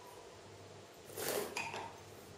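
A champagne flute set down on a hard bar counter about a second in: a short clink with a brief glassy ring that dies away.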